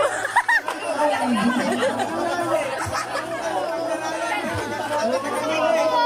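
A crowd of people talking and calling out all at once: loud, overlapping chatter.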